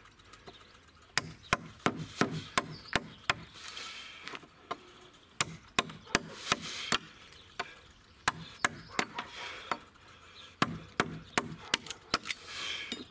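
STRYI woodcarving gouge struck repeatedly with a mallet, its edge cutting into a hard wooden board. The knocks come in runs of about two to three a second, with short pauses between runs.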